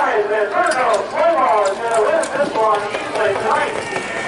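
Voices talking throughout, over the hoofbeats of a standardbred trotter pulling a sulky past on the track, heard as a few sharp ticks.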